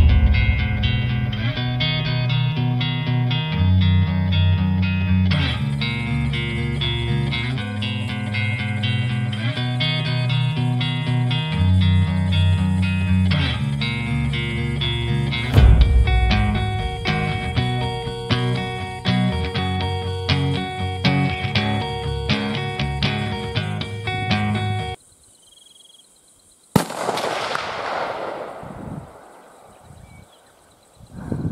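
Guitar-led background music, which cuts out about 25 seconds in. After a short silence comes a single sharp rifle shot, followed by a long rolling echo that dies away over a couple of seconds.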